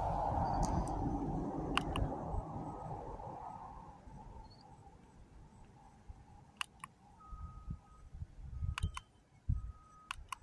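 Plastic push-button of a wireless doorbell remote clicking, pressed and released in quick pairs three times, over a rushing background noise that fades away in the first four seconds.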